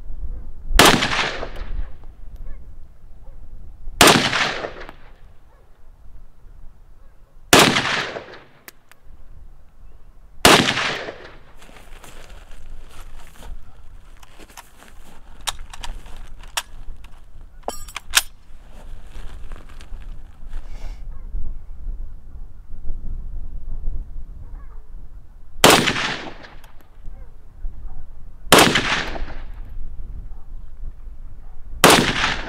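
Soviet SKS semi-automatic rifle firing 7.62x39 rounds: four single shots about three seconds apart, each with a fading echo. Then comes a pause of some fifteen seconds with quieter clicks and a short rattle. Near the end come two more shots about three seconds apart.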